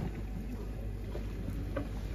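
Steady low rumble of outdoor background noise, with faint scattered small sounds over it.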